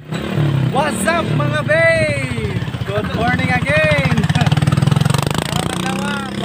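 Honda CRF150's single-cylinder four-stroke engine idling steadily, with a man talking over it.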